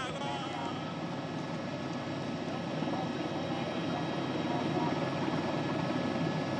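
Steady engine drone from race-coverage vehicles, an even hum with a few held tones, with spectators' voices mixed in.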